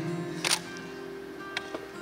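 Live acoustic music from grand piano and acoustic guitar: held notes and chords, with a couple of short sharp accents near the start and about one and a half seconds in.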